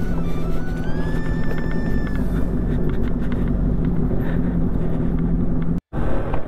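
Motorcycle engine and road noise while riding slowly over a rough gravel road, with background music playing over it. The sound drops out briefly near the end.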